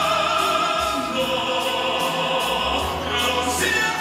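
Male voices singing a ballad in Italian in a big operatic pop style, with long held notes over instrumental accompaniment.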